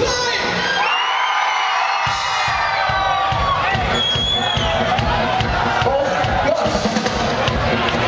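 Live rock band playing with a large crowd cheering and shouting along over the groove. The bass and drums drop out for about a second near the start, then the beat comes back.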